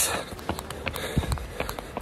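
Handling noise of a phone held in the hand while the screen is fiddled with: scattered light clicks and a dull thump about a second in.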